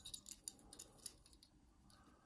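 Near silence with a few faint, soft clicks in the first second from fingers handling a small diecast model Jeep.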